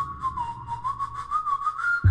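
A whistled melody from a K-pop song's intro, a single clear line wavering up and down around one pitch, over quick, even ticking percussion.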